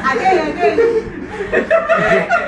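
A group of young people laughing and chuckling, with bits of talk mixed in.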